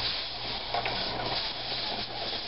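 Steady hiss with a low electrical hum underneath, typical of a home camcorder's recording noise, with a couple of faint ticks a little under a second in.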